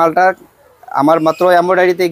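A man's voice speaking in short, loud phrases, with a brief pause about half a second in.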